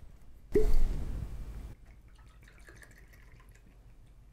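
A cork stopper is pulled from a glass gin bottle with a sudden hollow pop about half a second in, ringing briefly. Gin is then poured faintly into a stainless steel jigger.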